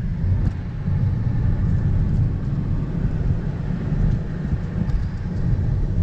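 Wind and road noise rushing in through the open window of a moving car: a steady low rumble of air and tyres.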